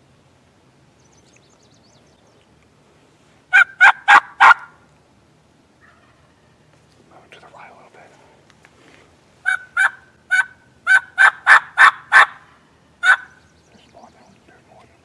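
Turkey yelping: a quick run of four sharp notes, then after a pause a longer run of about ten evenly spaced yelps.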